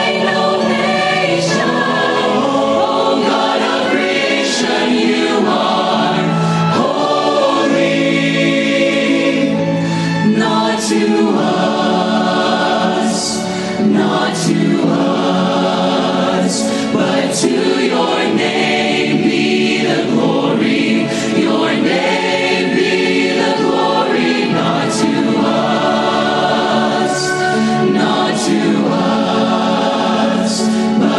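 Choir and vocal soloists singing a worship song together in sustained chords, at full volume.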